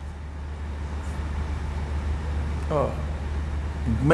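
A steady low hum under faint background noise, in a pause in a man's talk. A short voice sound comes about three-quarters of the way through, and speech starts again at the very end.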